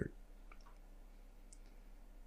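Quiet pause in a small room: faint room tone with a low steady hum and a few faint small clicks.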